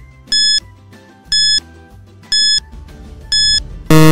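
Quiz countdown timer sound effect: a short, high electronic beep once a second, four times, then a loud, lower buzzer right at the end as the time runs out.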